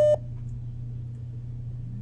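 A short electronic phone beep cuts off just after the start as the call is ended, leaving a steady low hum.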